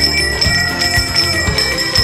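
Small metal bells on leather straps worn across the chest jangle with each walking step, about two clashes a second, over a steady high ringing.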